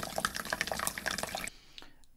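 Recorded water sample played back through the iPad's speaker: running, dripping water with many small quick drips, which stops about one and a half seconds in.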